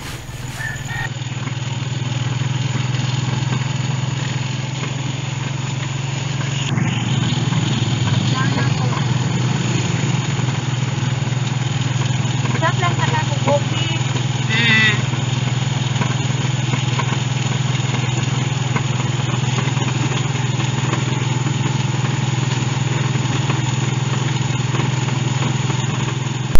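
Motorcycle engine of a tricycle (motorcycle with sidecar) running steadily on the road, heard from inside the sidecar as a low, even drone that grows slightly louder about two seconds in.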